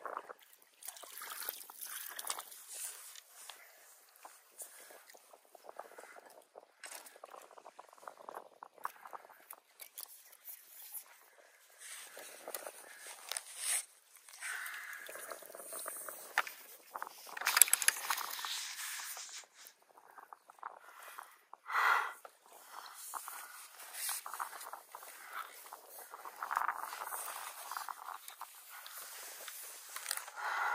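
Irregular splashing and handling noise, with knocks, rustles and sloshing water, as a hooked redfish is scooped up in a landing net and lifted into a small plastic boat. The loudest bursts come a little past the middle.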